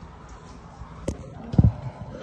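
Phone handling noise: a sharp click about a second in, then a short, low thump as the phone is moved and turned around.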